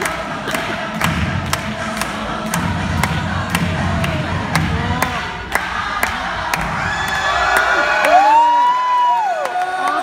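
Pop dance music with a steady beat plays through the hall's speakers while an audience cheers. In the last few seconds the cheering swells into long high-pitched screams.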